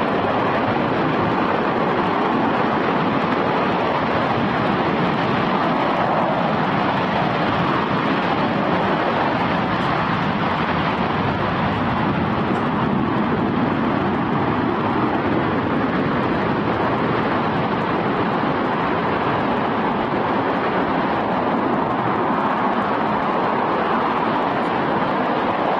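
RS-25 liquid-hydrogen/liquid-oxygen rocket engine firing in a static test: a steady, unbroken rush of loud noise that neither rises nor falls.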